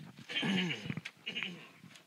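A person's brief wordless vocal sound, falling in pitch, about half a second long, with a shorter one after it.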